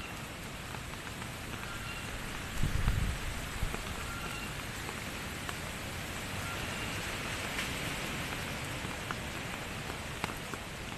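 Steady typhoon rain falling, with scattered individual drops. A brief low rumble about three seconds in is the loudest moment.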